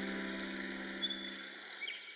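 A held piano chord slowly fading out over a soft forest soundscape. A few short bird chirps sound in the second half.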